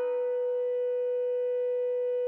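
Organ holding a single sustained note, a steady, nearly pure tone with faint overtones and no bass beneath it.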